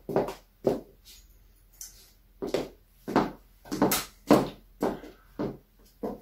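Footsteps on a hard floor: a series of short knocks, roughly one every half second to second, with a quieter gap about a second in.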